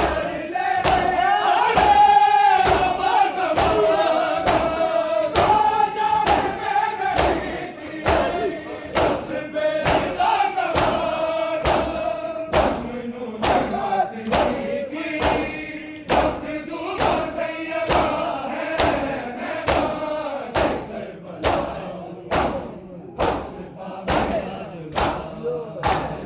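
A crowd of men doing matam, beating their bare chests with their open hands in unison: a steady beat of loud slaps, a little more than one a second. A chorus of men's voices chants the noha's refrain over the slaps and thins out near the end while the slapping carries on.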